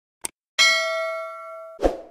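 Subscribe-animation sound effects: a mouse click, then a bright bell ding that rings and fades for about a second, cut off near the end by a short, loud thump.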